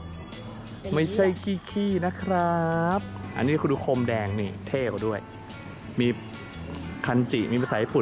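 People's voices over a steady, high-pitched insect buzz.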